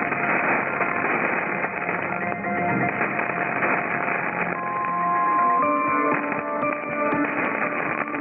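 Music from Monte Carlo Doualiya's mediumwave AM broadcast on 1233 kHz, received at long distance on a software-defined radio, so it comes through thin and full of static and hiss. It is muddy in the first half, with clearer held notes from about halfway through.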